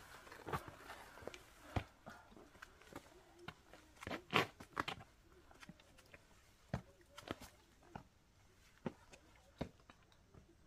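Faint, irregular steps and scuffs of hiking boots on rock, with scattered clicks and scrapes; the loudest cluster comes a little after the middle.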